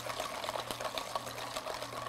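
Wire whisk beating thick, grainy brownie batter in a stainless steel bowl, in rapid, steady strokes. The batter is grainy at this stage, with the eggs just whisked into the chocolate, butter and sugar.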